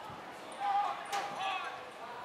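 Players shouting calls on the field, with a single thud of the football being kicked about a second in.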